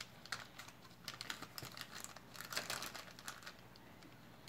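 Faint, irregular small clicks and light rustling of a metal bangle bracelet and its clasp being turned over in the fingers, coming in short clusters.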